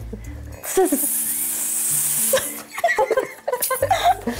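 Several women hissing together like snakes, one long "tsss" for about two seconds, over steady background music. Short laughter and voices follow near the end.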